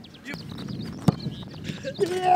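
A soccer ball struck hard once, a single sharp thump about a second in, over the faint murmur of voices on an open training pitch.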